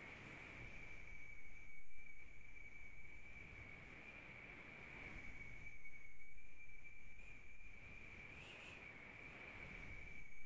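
Faint, steady high-pitched whine held on one pitch over a low hiss, with two soft swells of noise, about two seconds in and again about six seconds in.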